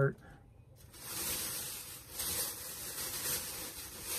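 Rustling of a bag and clothing being rummaged through, beginning about a second in and going on in uneven surges.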